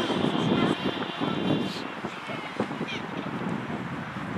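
Voices of young players and spectators calling out across a football pitch, with a few sharp rising shouts.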